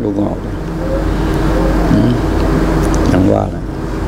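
A steady, low mechanical drone, a motor running evenly with a constant hum.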